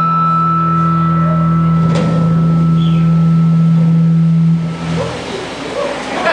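Electric guitar's final note sustained through the amplifier at the end of a surf-rock song, ringing as one steady held tone that stops about four and a half seconds in. Crowd noise rises near the end.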